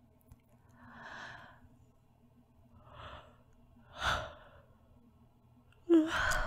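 A woman breathing slowly and softly, close to the microphone: three breaths about a second, three and four seconds in, the third the loudest, over a faint steady background hum. The breathing is sleepy, as if she is drifting off to sleep.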